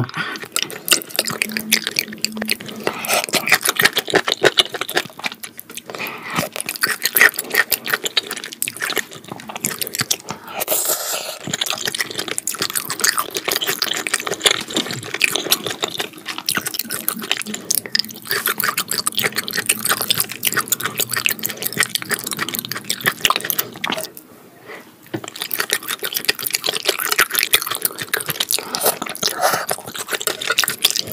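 Close-miked wet chewing and lip smacking of raw beef sashimi, a dense run of small sticky clicks, with a brief lull about 24 seconds in.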